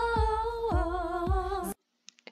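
Pop song with women's voices holding one long sung note over a backing beat that falls about every half second; the music cuts off suddenly near the end.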